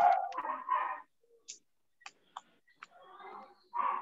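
A voice trails off in the first second, then a pause holds a few faint, isolated computer clicks while text on a slide is edited, and speech resumes near the end.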